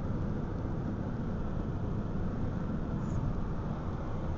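Steady low rumble of road and engine noise heard from inside the cabin of a moving Ford Freestyle.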